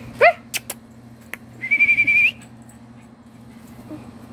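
A dog's rubber squeaky toy being chewed: a short squeal rising in pitch, a few clicks, then a high, slightly wavering squeak of under a second that bends upward as it ends.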